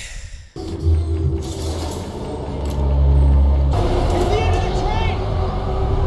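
TV drama soundtrack: a loud, deep, steady rumble under a music score, with a brief voice about two-thirds of the way through.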